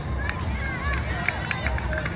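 Outdoor soccer-match sound from the sideline: wind rumbling on the microphone, with distant voices of players and spectators calling out and a few short high chirps.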